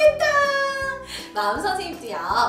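A children's song sung over an instrumental backing track, with one long held note that falls slightly in pitch before the singing goes on.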